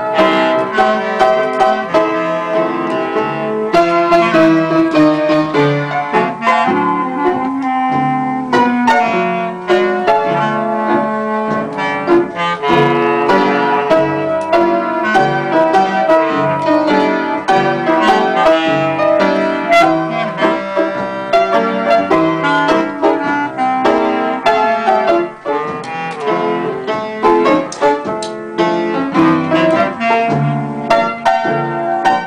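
Piano and clarinet playing a tune together as a duet, continuously.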